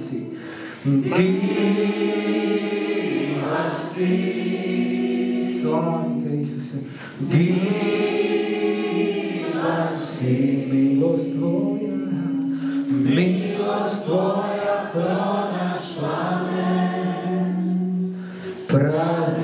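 Several voices singing a slow worship song together in long held phrases, with steady instrumental accompaniment beneath and brief breaths between phrases.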